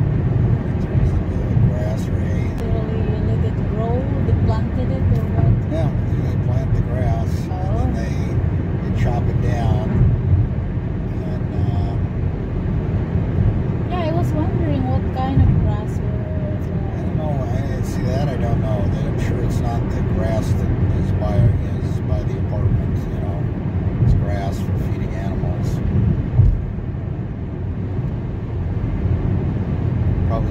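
Steady road and engine rumble inside a car cruising at highway speed.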